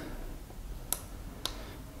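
Two faint clicks about half a second apart from the push-button of a Hanna Checker pocket colorimeter for phosphorus, pressed to switch the meter on.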